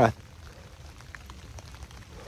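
Light rain, with scattered faint drop ticks over a low, steady hiss.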